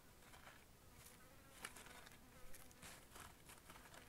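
A flying insect buzzing faintly, a thin high hum that wavers in pitch, over soft scratchy rustles of dry dirt in a coiled grass basket being handled.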